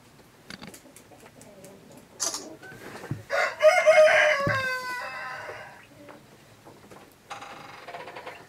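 A pheasant calling: one loud, harsh call about three seconds in, lasting a second and a half with its pitch falling, with a short sharp noise just before it. Faint scattered ticking around it.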